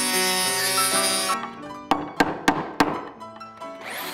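Background music with held notes, then four sharp knocks about a third of a second apart in the middle: a steel chisel chopping into an old piano's wooden pinblock.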